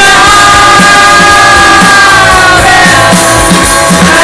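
Live rock band playing loudly, heard from the audience: long held notes over a steady drum beat.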